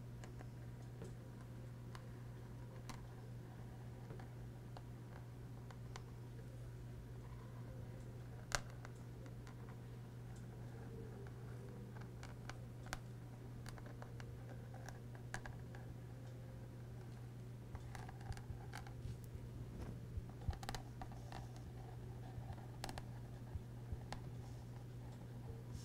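Faint gritty scratching and ticking of an acrylic paint marker's tip dragging over a rough canvas coated with glitter and metallic paint, growing busier in the second half, with one sharper click about eight seconds in. A steady low hum runs underneath.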